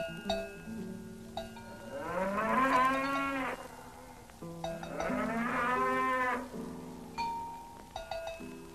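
A cow mooing twice, two long lows about a second apart, with a few scattered clinks of cowbells.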